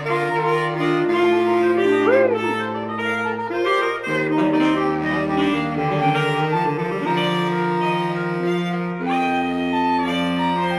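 Saxophone quartet music: several saxophones holding chords that change every couple of seconds, with one voice swooping up and back down in pitch about two seconds in.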